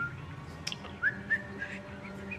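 A sharp click, then a few short, high whistle-like notes, the first gliding upward, over a low steady hum.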